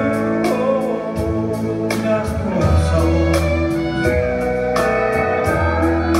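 Live country band playing a slow song: a sung line ends on its last word at the start, then guitars, bass and steel guitar carry on, with the drums keeping a steady beat of about two strokes a second.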